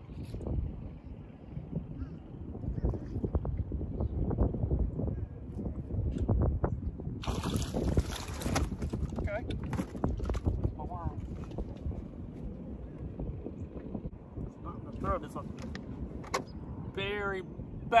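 Wind buffeting the camera microphone in a steady low rumble, with a burst of hissing noise for about a second and a half around seven seconds in and a man's voice near the end.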